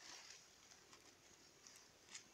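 Near silence: faint outdoor background hiss, with a brief soft rustle at the start.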